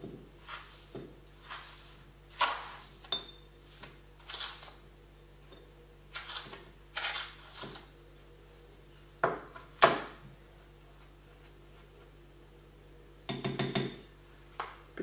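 A plastic spoon scraping and tapping against a ceramic mortar and a plastic bowl as a dry mixture is spooned from one to the other, in short irregular scrapes. After a lull, a quick cluster of knocks near the end as the bowl is set down on the table.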